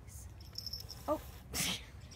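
A short, sharp, breathy burst from one of the pets, a dog or a cat, about one and a half seconds in, like a sneeze or a hiss. It comes just after a brief, faint voiced blip.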